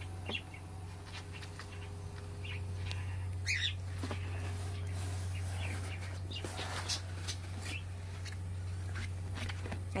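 A ferret rummaging among cardboard boxes, with scattered rustles and scrapes of cardboard over a steady low hum, and a short high chirp about three and a half seconds in.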